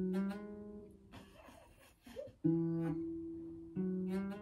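Acoustic guitar played slowly note by note: a note rings out at the start, then two more about two and a half and nearly four seconds in, each left to ring and fade, with a brief scratchy string noise in between. It is a learner practising a riff, letting the notes ring.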